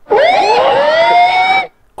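A sound effect played over the stream: a loud wail of several pitches gliding upward together for about a second and a half, then cutting off abruptly.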